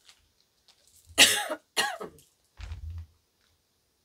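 A woman coughing twice in quick succession about a second in, followed by a softer, lower sound.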